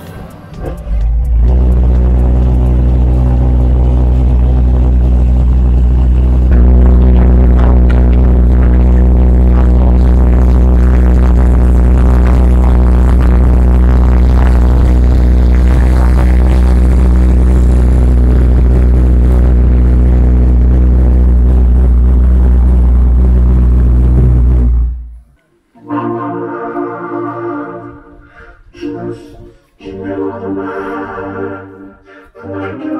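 Homemade pulse jet engine catching and going resonant about a second in, then running with a very loud, steady, low-pitched drone until it cuts off about 25 seconds in. Electronic synthesizer notes follow near the end.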